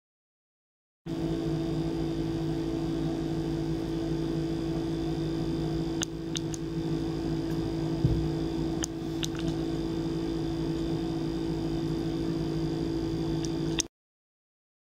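Small tabletop ultrasonic cleaner running with a steady buzzing hum, a few faint ticks over it. The hum cuts in suddenly about a second in and stops abruptly just before the end.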